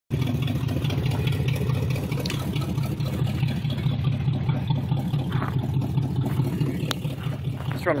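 A 1979 Camaro's 350 V8 idling steadily through glasspack mufflers welded straight to the header collectors, a loud, low exhaust note. The engine is running a little bit rich.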